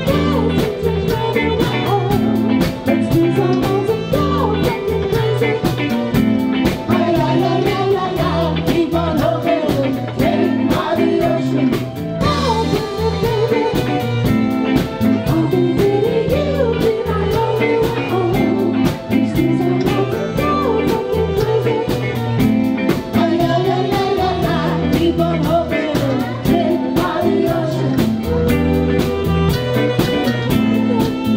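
Live band playing an upbeat song with drum kit, electric bass and electric guitar, and a wavering melody line carried by voice or saxophone over a steady beat.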